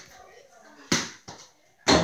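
Small indoor basketball bouncing. One sharp thud comes just under a second in, followed by a lighter bounce.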